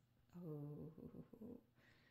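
A puppy growling quietly in play, with a woman's soft "oh" about half a second in.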